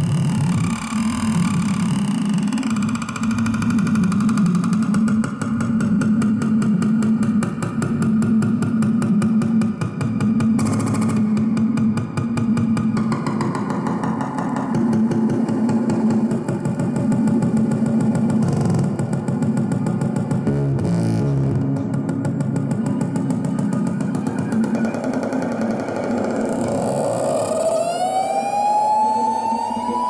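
Modular synthesizer and amplifier feedback playing a dense, loud electronic noise drone, with a steady low hum beneath held tones and a fast flutter. In the last few seconds several tones glide upward.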